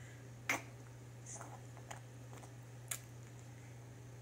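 A few sharp clicks of a small spoon against a plastic baby-food container as it scoops puree, the loudest about half a second in and another near three seconds, over a low steady hum.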